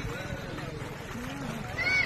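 Voices calling out at a distance, with a high, arching shout near the end, over a low steady background noise.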